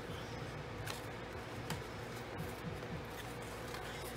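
Cardstock paper card being pulled open and handled: soft papery rustles and a few faint crisp ticks over a steady low hum.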